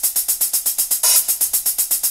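Sampled closed hi-hat from the MINDst Drums plugin playing an even run of sixteenth notes at 120 BPM, about eight hits a second. Every hit is at the same velocity, so the pattern sounds flat and mechanical.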